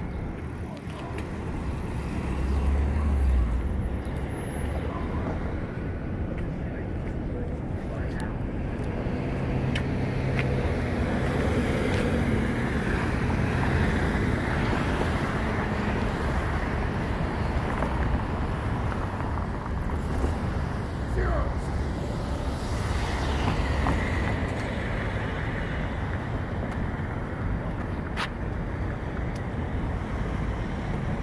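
City street traffic: cars passing along a wide road over a steady low rumble of road noise.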